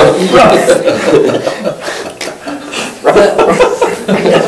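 A group of adults laughing and chuckling, several voices overlapping. The laughter eases about two seconds in and picks up again a second later.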